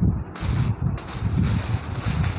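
Irregular rumbling and rustling noise close to the microphone, with a hiss that sets in about a third of a second in.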